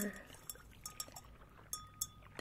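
A metal chalice handled in the hands: a few light taps and clinks on its metal, some followed by a faint high ring.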